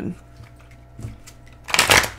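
Oracle cards being shuffled in the hands: a short, loud riffling rustle near the end, after a faint tap about a second in.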